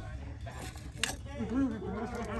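Light metallic clinking and jingling as a hand wearing stacked chain bracelets reaches in among ceramic figurines on a shelf, with one sharp clink about a second in. A voice comes in near the end.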